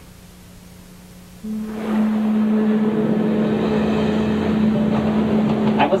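Rushing wind and sea noise under a steady low hum, starting suddenly about a second and a half in after a quiet opening.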